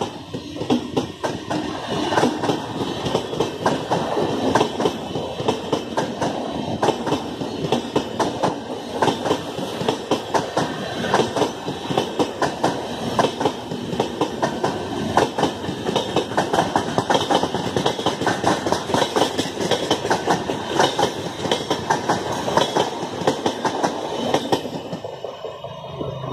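Red LHB passenger coaches running past at speed, their wheels clattering rapidly over the rail joints in a steady clickety-clack. The sound falls away near the end as the last coach goes by.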